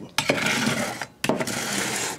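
A fire-damaged cordless drill being handled on a hard surface: clattering knocks and scraping of its plastic body, in two bursts with a short pause about a second in.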